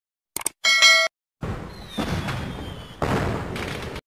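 End-screen subscribe-animation sound effects: a quick double click, then a bright bell ding that cuts off abruptly. About a second and a half in, a loud rushing noise begins, with a faint falling whistle, and it swells again near three seconds.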